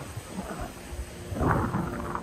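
Wind buffeting the microphone in low, uneven rumbles, over surf washing up the beach, with a louder rush about one and a half seconds in.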